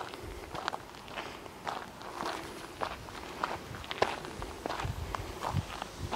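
Footsteps on gravelly dirt, uneven steps about two a second, with a few low thumps near the end.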